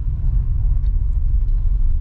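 Steady low rumble of a car driving along a town road, heard from inside the cabin: engine and tyre noise.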